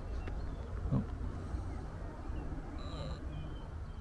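Wind rumbling on the microphone on an open hilltop, with a short high chirp, most likely a bird, about three seconds in.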